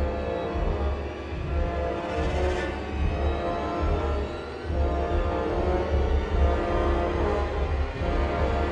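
Tense, ominous film score: held chords over a deep low bass that swells and drops away every second or two.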